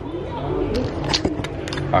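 Low, indistinct voices over a steady hum of room noise, with a few light sharp clicks a little over a second in.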